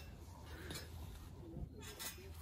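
Faint rustling of a woven blanket being tucked around a child in a hanging chair, over a low steady hum.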